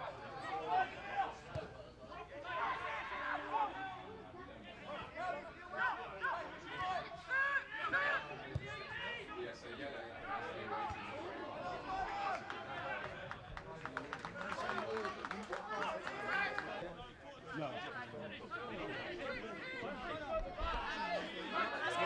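Indistinct voices of football players and spectators calling out and chattering around the pitch, none of the words clear.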